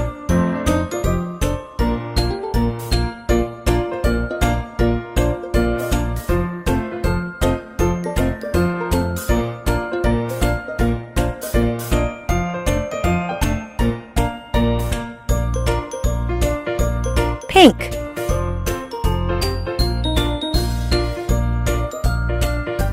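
Cheerful children's background music with a steady beat and jingly tones. About three-quarters of the way through, a brief sliding tone cuts across it, the loudest moment.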